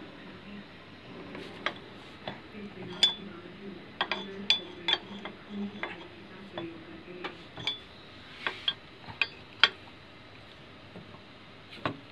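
Open-end spanner clinking against a hex bolt and the metal housing as it is fitted and worked: a dozen or so sharp, irregular metallic clinks, some with a short high ring, over a faint low hum that fades about halfway through.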